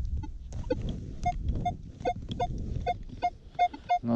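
Minelab X-Terra Pro metal detector giving a series of short beeps, about two to three a second, as the coil is swept back and forth over a buried metal target that reads about 60 on its ID scale at roughly 30 cm depth. A low rumble from wind on the microphone lies underneath.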